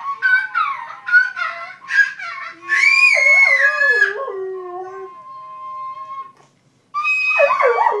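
A dog howling along to a child tooting on a plastic toy horn: short wavering horn notes, then a loud rising-and-falling howl about three seconds in over a long held horn note, and another howl after a brief pause near the end.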